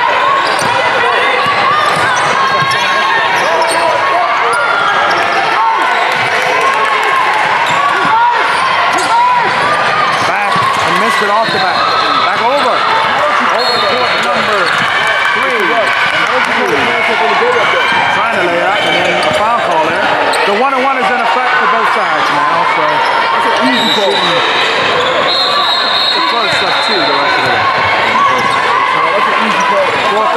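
Basketball being dribbled and bouncing on a hardwood gym floor during play, under a steady mass of overlapping voices from players and spectators in a large hall.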